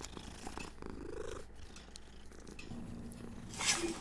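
A long-haired tabby cat makes one short, soft purring call about a second in, followed by a faint low hum and a brief burst of hiss near the end.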